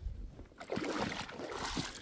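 Shallow lake water sloshing and splashing around a wading boot and a hand reaching into it among the pebbles, picking out a stone.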